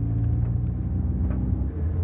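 A car driving, heard from inside the cabin: a steady low engine hum with road noise, which changes slightly near the end.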